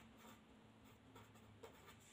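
Very faint scratching of a felt-tip marker writing on paper, with a small tap about one and a half seconds in.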